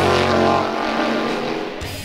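Closing of a rock theme tune: a rising engine-like sound effect at the start, then a held chord that fades away.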